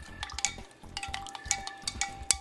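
A spoon stirring liquid in a Pyrex glass measuring cup, clinking against the glass again and again so that it rings.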